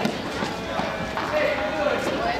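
Indistinct background chatter of students, with footsteps on a concrete walkway.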